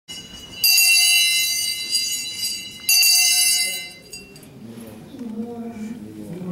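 Brass handbell rung twice, about two seconds apart, each ring sounding bright and high and fading away. A voice begins near the end.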